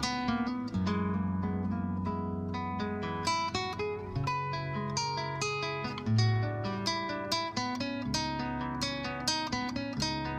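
Acoustic guitar playing on its own: a run of plucked notes over ringing low bass notes.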